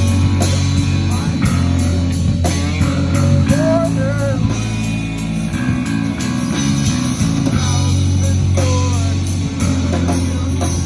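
A live rock band plays loudly: electric guitar, bass guitar and drum kit, with a guitar line bending its notes in the middle of the passage.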